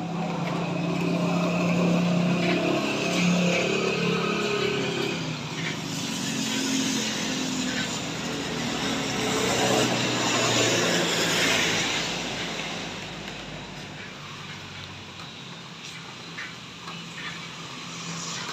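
Motor traffic on a rain-wet road: an engine hums steadily for the first few seconds, then tyre hiss on the wet asphalt swells to a peak about ten to twelve seconds in and fades away.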